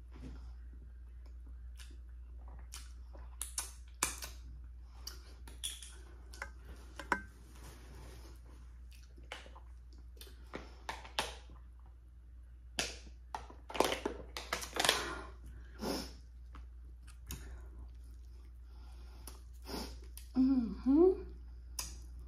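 Close-miked eating and drinking: scattered wet mouth smacks and chewing clicks, then a run of gulps from a bottle about halfway through. A short, wavering pitched squeak or hum comes near the end.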